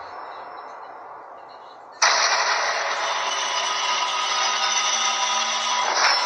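A dramatic sound effect on a TV serial's soundtrack: faint hiss at first, then about two seconds in a sudden loud rush of dense hissing noise with steady tones running through it.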